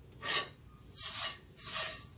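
A towel rubbed over a skillet to wipe off water, in three short rubbing strokes.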